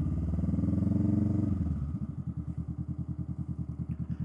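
Motorcycle engine under way at low speed: the revs rise for about a second and a half, then drop back to a steady, low, even pulse as the bike rolls on slowly.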